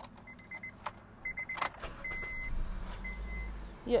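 A car's dashboard warning chime beeping at a single high pitch, first in quick runs of short beeps and then as longer single tones, with a few sharp clicks. A low rumble builds from about halfway through.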